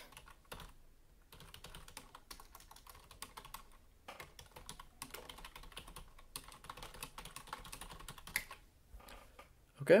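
Typing on a computer keyboard: quick runs of light key clicks with a few brief pauses as a sentence is typed.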